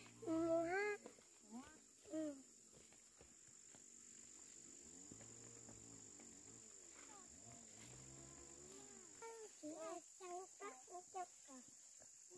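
A young child's high voice speaks in short phrases, with quieter, lower voicing in the middle stretch. A faint steady high-pitched whine runs underneath.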